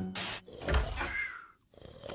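Cartoon sound effects in quick succession: a short hiss, a low thud, then a brief falling whistle-like tone.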